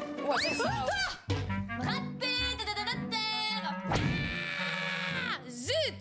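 Background music under wordless exclamations and shrieks from several people, with one long held shriek about four seconds in that falls away at the end.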